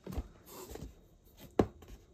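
Hands handling a cardboard model building: a soft scuff of cardboard and a few sharp taps, the loudest about one and a half seconds in.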